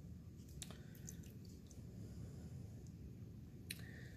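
Faint wet handling sounds and a few scattered small clicks as a gloved hand picks a sheep eye out of the specimen bucket, the clearest click near the end.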